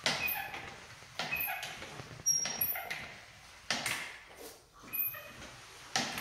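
Hand-operated drywall mud pump on a compound bucket being stroked about once every second and a bit, filling an automatic taper with joint compound. Each stroke starts with a sudden clack and trails off with short squeaks.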